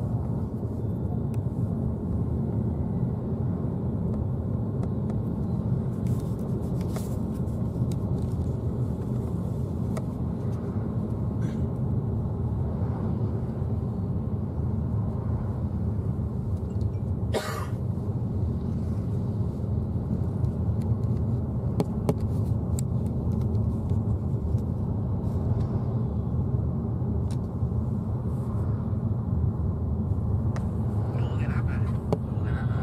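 Steady low road and engine rumble of a moving car, heard from inside the cabin, with one sharp click about halfway through.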